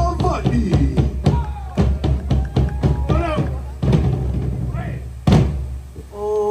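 Background music with a deep, steady bass and repeated drum hits, and a voice over it. A loud hit comes a little after five seconds in.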